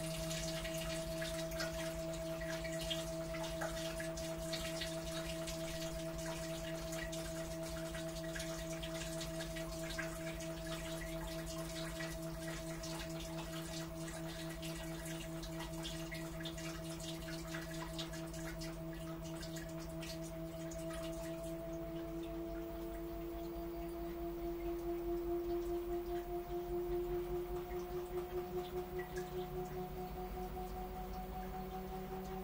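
Washing machine running with a steady mechanical whine from its motor or pump, with light splashing and trickling water. About two-thirds of the way in, the water sound dies away, and the whine slowly rises in pitch and begins to pulse.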